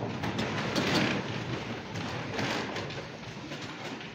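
A congregation of several dozen people sitting down in wooden church pews: a wash of rustling clothes and shuffling, with scattered knocks against the pews. It is loudest in the first three seconds and eases off near the end.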